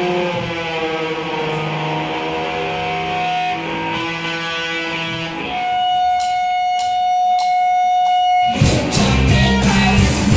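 Live rock band: electric guitars ringing and sliding between notes, then one high note held steady while a few sharp clicks sound, like drumsticks counted in. About 8.5 seconds in, the full band with drums and bass comes in loud all at once.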